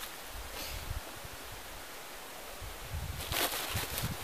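Cloth rags and a pillowcase rustling against a woven plastic corn sack as they are stuffed into it, louder and more continuous for a stretch near the end.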